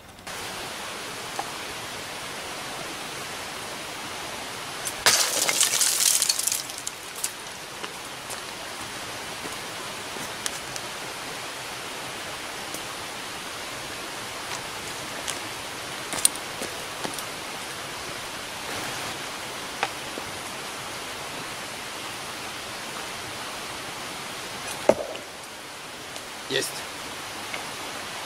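Steady outdoor hiss with a loud burst of noise about five seconds in and a few scattered sharp clicks. Near the end comes a single sharp knock as a thrown faceted glass tumbler strikes and sticks in a wooden target.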